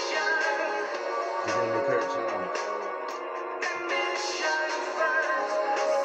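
Music playing steadily, with many sustained pitched notes and a few low sliding notes.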